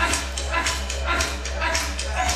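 Women's voices chanting a traditional Aboriginal dance song, with sharp yelping calls over a beat of knocks about twice a second.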